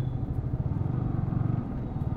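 Yamaha R15 V3's single-cylinder engine running steadily at low revs while the bike is ridden slowly at about 18 km/h.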